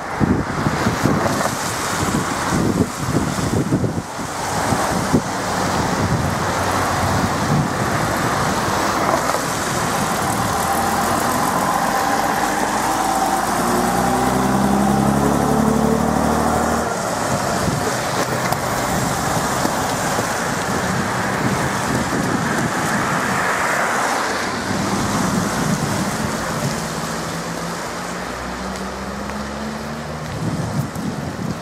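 Vintage AEC Regal IV RF single-deck bus's diesel engine accelerating past, its note rising and growing louder until it falls away suddenly a little over halfway through, then fading as the bus goes off. Tyres of passing cars hissing on the wet road and wind on the microphone, mostly in the first few seconds.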